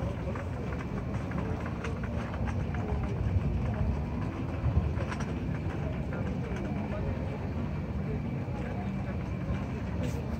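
Outdoor ambience on a busy pedestrian plaza: a steady low rumble with indistinct voices of passers-by.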